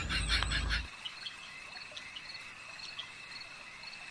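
Laughter that stops about a second in, followed by a steady high chirring of crickets with a few sharper chirps: a night-time insect chorus.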